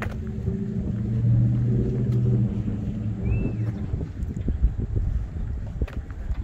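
A vehicle engine running with a steady low hum, loudest in the first half and fading out after about four seconds. A single short high chirp comes a little after three seconds.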